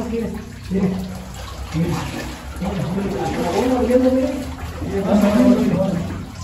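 Men's voices talking over the sound of water in a rock tunnel, water trickling from the rock and splashing in shallow water underfoot.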